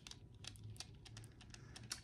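Faint, scattered light clicks and ticks from handling jewelry: a display card of rhinestone drop earrings held in ringed, braceleted hands.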